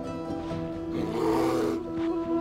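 A male polar bear roars once, for under a second, about a second in, while sparring. Background music with steady held notes plays throughout.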